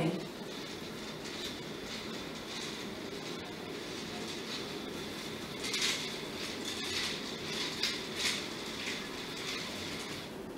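Motorized curtain track drawing a sheer curtain closed: a steady motor whir with a thin high whine running under it. Irregular clicking from the track comes in the second half.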